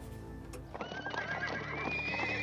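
Low background music, then a horse neighing about a second in: one long, wavering high call over the music.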